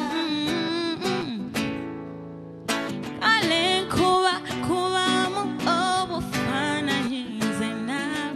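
A woman singing with acoustic guitar accompaniment. About two seconds in the voice drops out and the music fades for about a second, then the singing comes back in strongly.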